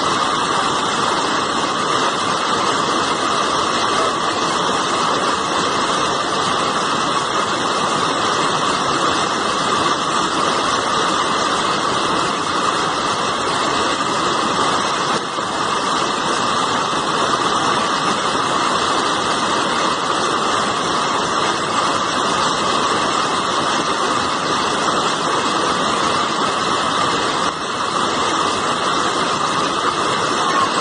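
Fast-flowing brown floodwater rushing steadily: a loud, even roar of a river in spate with churning waves.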